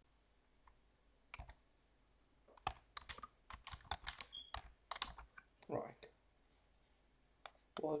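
Typing on a computer keyboard: a single key press about a second and a half in, then a quick run of keystrokes from about two and a half to five seconds in, and a couple more key presses near the end.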